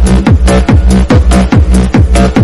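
Fast electronic dance music from a DJ mix: a steady kick drum close to three beats a second, with hi-hats and a sustained bass line.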